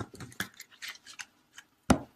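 Tarot cards being shuffled and handled: a run of irregular light clicks and card snaps, with one louder snap near the end.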